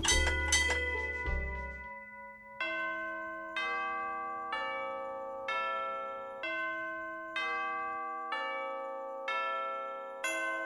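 A few quick bell strikes over a low rumble for the first couple of seconds. Then a slow melody of ringing bell-like chime notes begins, one note struck about every second and each fading away, opening a piece of holiday music.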